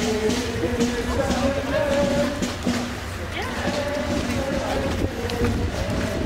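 A group of people singing together as they march, holding long notes, over low outdoor rumble.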